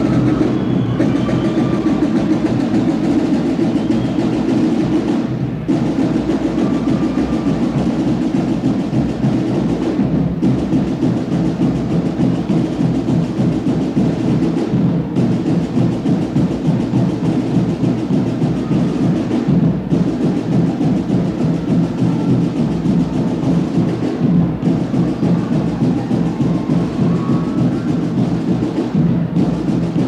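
A university marching band's drumline plays its entry cadence, a steady, driving drum pattern, with a brief dip in the sound roughly every five seconds.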